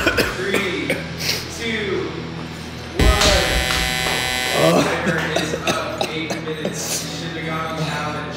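A harsh electric buzzer sounds once, starting sharply about three seconds in and lasting under two seconds: the signal that the eight-minute challenge time has run out. Voices around it.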